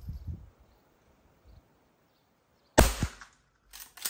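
A single shot from a Henry H001 lever-action .22 rimfire rifle: one sharp crack about three seconds in with a short ringing tail. No clang from the steel target follows, so the shot is a miss. A few soft low knocks come at the start.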